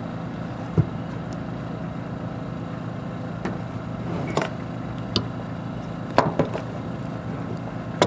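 Long-handled hand swaging tool crimping a sleeve onto a wire-rope halyard: about six short, sharp metal clicks and clacks from the tool, over a steady engine hum in the background.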